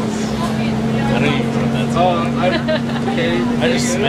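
City bus engine running with a steady low hum at two pitches, heard from inside the passenger cabin, with people's voices chattering over it.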